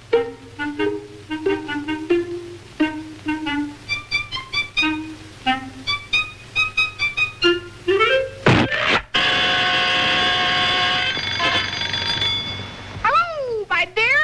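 Early-1930s cartoon orchestra score: short, staccato sneaking notes, then a rising slide and a sharp hit about eight and a half seconds in. A long held ringing chord follows, and wavering, sliding notes come near the end.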